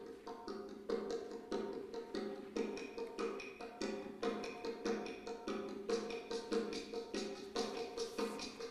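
Instrumental accompaniment of a choral anthem: light percussion taps in a fast, steady beat over sustained pitched chords.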